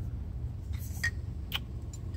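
A few light clicks from a wooden whisky presentation case being handled, over a steady low hum.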